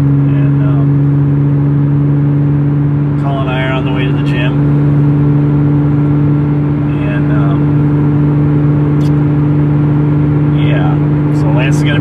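Porsche Cayman S engine droning at a steady highway cruise, heard from inside the cabin over tyre and road noise.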